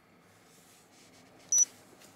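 A single short, high-pitched electronic beep about one and a half seconds in, much louder than the faint car-cabin road noise under it.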